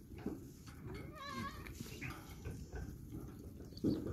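A young goat kid bleating, one wavering call about a second in and a short one soon after.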